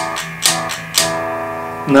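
G&L Custom Shop electric guitar played: three picked strokes about half a second apart, each left to ring, the last one held for about a second.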